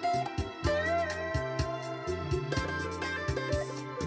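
Electric guitar playing a melodic lead line, with a note bent up and held with vibrato about a second in, over a backing track with a steady beat and bass.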